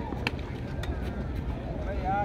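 Tennis ball struck by rackets and bouncing during a doubles rally on a clay court: a couple of short, sharp pops in the first second, with faint voices in the background.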